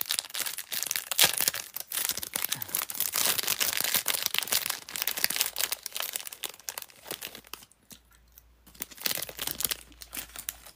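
A packet of stud earrings being opened and handled: a dense run of small rustling crackles that thins out about three-quarters of the way through and picks up again near the end.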